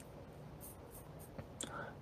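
A quiet pause between sentences: faint room hiss and low hum, with a few small mouth clicks and a short breath in the second half, just before the man speaks again.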